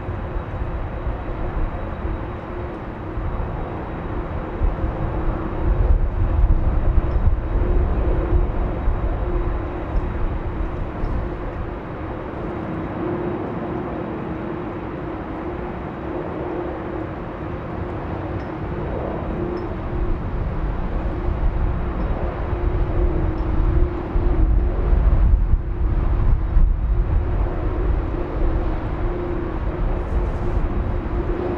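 Airport apron ambience: a steady hum of aircraft noise with a constant low drone, and wind rumbling on the microphone in gusts, stronger about six seconds in and again near the end.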